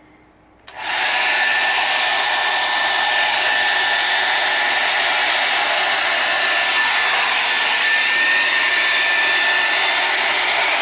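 Handheld blow dryer switched on just under a second in, then running steadily, air rushing with a thin high whine, as it blows wet acrylic paint across a canvas.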